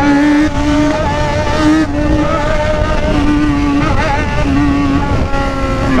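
Yamaha XJ6 inline-four engine running at fairly steady revs while riding, its pitch holding nearly level with small shifts, over loud wind rush on the microphone.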